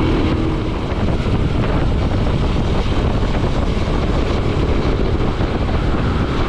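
Steady rush of wind and road noise on a riding motorcyclist's microphone, with the motorcycle running at cruising speed underneath.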